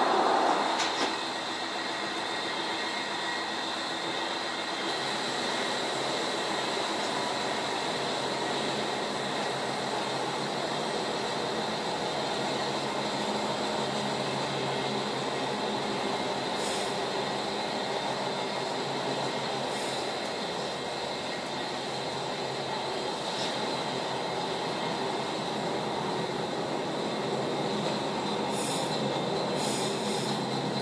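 Commuter train running, heard from inside the carriage: a steady rumble of wheels on rail with a thin, steady high whine. Louder for about the first second, then even, with a few brief high squeals now and then.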